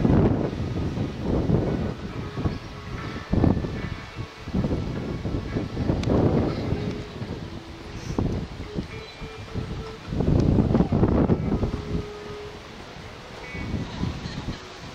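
Wind buffeting the microphone in irregular gusts of low rumble, strongest near the start and again about ten seconds in.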